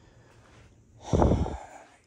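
A man's short, loud breath, a snort-like exhale close to the microphone, about a second in.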